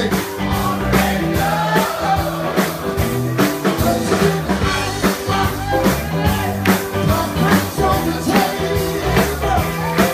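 Live rock band playing, with a lead singer, electric guitar and drums on a steady beat, heard from within the crowd.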